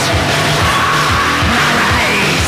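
Rock music from a band recording: a steady drum beat under dense instruments, with a held high note that bends upward near the end.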